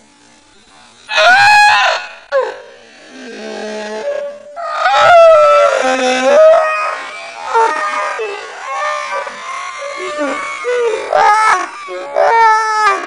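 Hysterical human laughter in high, wailing, drawn-out cries that bend up and down in pitch. It starts about a second in and goes on in loud bouts with short breaks.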